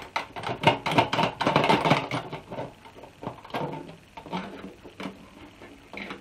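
Stainless-steel keg lid being fitted back on and latched: a quick run of metal clicks and clatter over the first two seconds, then a few scattered taps.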